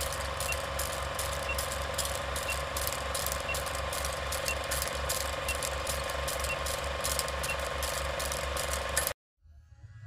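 Film-projector clatter sound effect under a countdown leader: a steady rhythmic mechanical chatter over a steady hum, with a short faint blip once a second. It cuts off suddenly near the end.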